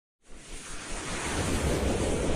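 A whoosh sound effect for an animated logo intro: a rushing swell of noise with a deep rumble underneath, starting from silence and building steadily in loudness.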